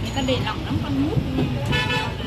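A short vehicle horn toot near the end, over people talking and a steady traffic hum.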